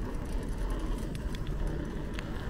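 Riding a bicycle on asphalt: steady low wind buffeting on the microphone and tyre rumble, with small scattered clicks and rattles from the bike.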